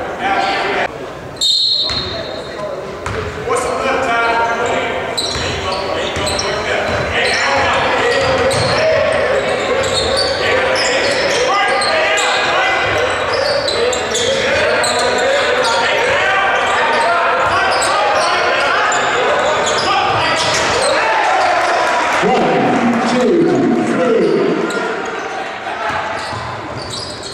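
Basketball game sound in a large gym: indistinct overlapping voices from players, bench and crowd, with a basketball bouncing on the hardwood. There is a brief high tone about a second and a half in.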